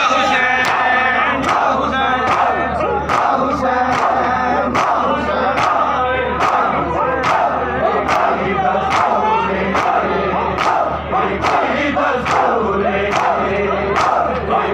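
Crowd of men beating their chests (matam) in unison, a sharp slap roughly three times every two seconds, over a loud chanted lament from many voices.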